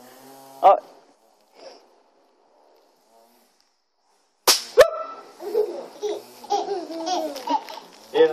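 Two sharp cracks from bang snaps (snap pops) going off about four and a half seconds in, a fraction of a second apart, followed by a baby laughing.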